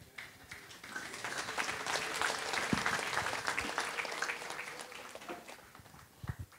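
A congregation applauding, the clapping swelling about a second in and dying away near the end.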